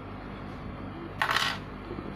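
Steady low hum, with one brief scratchy noise lasting about a third of a second, a little over a second in.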